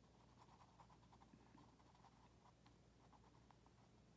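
Faint scratching of a pencil on paper in many quick, short strokes, shading a small circle dark.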